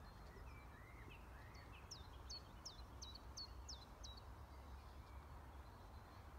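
Faint birdsong over quiet outdoor ambience: a few soft whistles, then a quick run of about seven short, high, sharp notes between roughly two and four seconds in.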